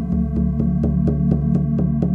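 Ambient meditation drone: a steady low electronic hum pulsing evenly about four times a second.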